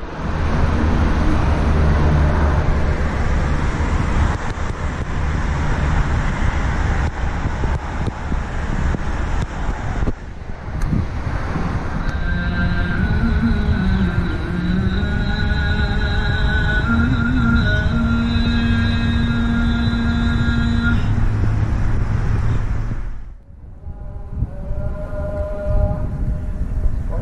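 Steady outdoor rumble like road traffic. About halfway through, sustained pitched tones join it, and the whole sound drops out briefly near the end at an edit.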